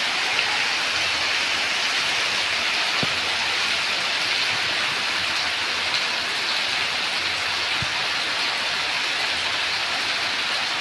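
Heavy rain falling steadily, splashing on wet ground, with water running off a roof edge. A few faint separate drops or ticks stand out from the even downpour.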